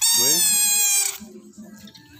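Toy trumpet blown in one loud, high, buzzy blast lasting about a second, starting and stopping abruptly.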